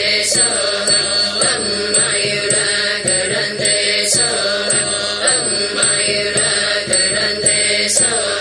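Buddhist mantra chanted by voices over a musical accompaniment with a steady beat of about two strikes a second.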